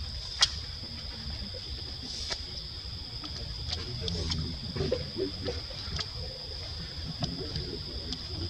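Outdoor ambience with a steady high-pitched insect drone over a low rumble, broken by scattered sharp clicks, the loudest just under half a second in.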